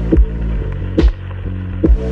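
AI-generated electronic chillout music: sustained low pad and bass tones under a slow, soft beat that lands a little less than once a second.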